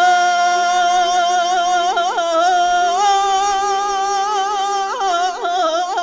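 A group of Bulgarian folk singers, mostly women, singing unaccompanied: long held notes over a steady lower drone that steps up about three seconds in, with short vocal ornaments about two and five seconds in.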